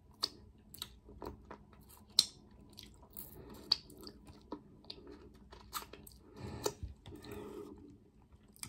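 A person chewing a mouthful of chocolate-covered strawberry and licking chocolate off her fingers: soft, wet mouth clicks and smacks at irregular intervals, with a louder run of chewing about six and a half seconds in.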